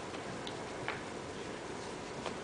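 Room tone of a large hall during a pause in speech, with a few faint, irregular clicks; the clearest comes a little under a second in.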